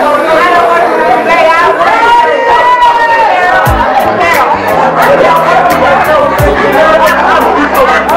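Live church music at full volume: many voices singing and calling out over a bass line, with occasional low drum thumps and a steady run of sharp percussive strikes.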